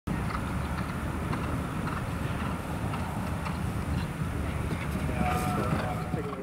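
A horse galloping on grass toward a cross-country fence, its hoofbeats under a steady outdoor rumble on the microphone.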